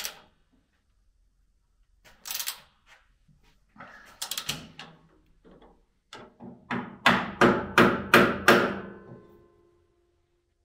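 Metal knocks at the moulder's cutter-head mount: a few light clicks and scrapes, then a run of about five sharp knocks, roughly two a second, with a short metallic ring after them. The work is shifting the loosened cutter head down on one side to bring it parallel with the table.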